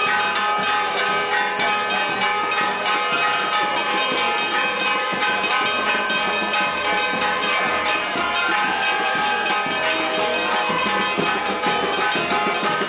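Church bells ringing loudly and continuously, many overlapping strikes with their tones hanging together.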